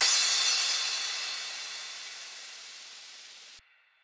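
The closing tail of an electronic dance remix: the beat stops and a hissing wash of noise rings out, fading steadily for about three and a half seconds before cutting off abruptly into silence.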